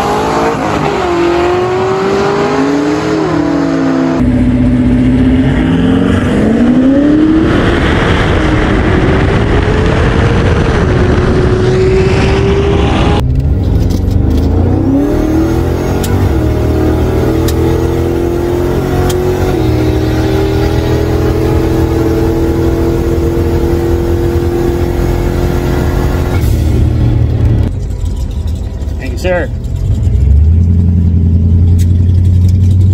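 Lincoln Town Car's engine at full throttle on a drag-strip pass. Its pitch rises and drops back at each gear change, heard first from trackside and then from inside the cabin. Near the end it falls away as the car comes off the throttle.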